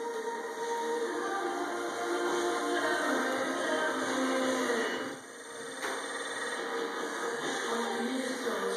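Background music of long held chords that change every second or two, dipping briefly about five seconds in.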